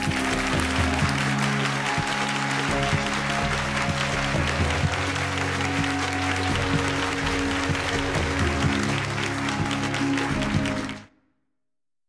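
Studio audience applause with music playing over it, both fading out to silence about eleven seconds in.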